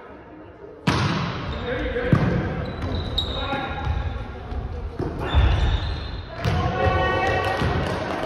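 Volleyball rally in a gymnasium: four sharp smacks of hands and arms striking the ball, about a second in, around two seconds, around five seconds and at six and a half seconds, each ringing on in the hall. Players shout calls between the hits.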